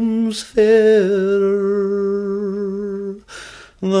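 Unaccompanied male voice singing a Scots ballad, holding two long, slightly wavering notes at the end of the refrain line. Near the end there is a brief pause for breath before the next line begins.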